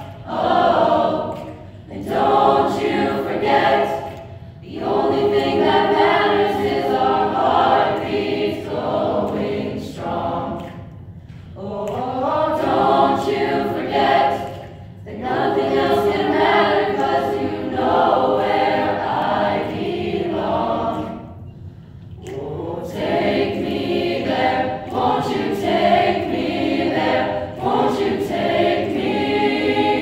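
Mixed choir of teenage boys' and girls' voices singing, in phrases several seconds long separated by brief pauses.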